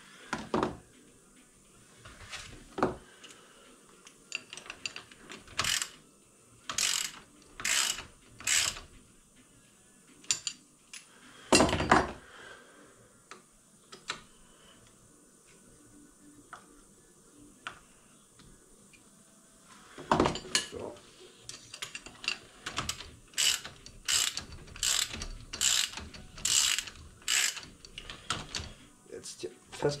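Ratchet wrench clicking in short bursts as it turns the top cap onto a pitbike fork leg. There are a few scattered strokes at first, a quiet stretch in the middle, then a steady run of quick strokes through the last ten seconds.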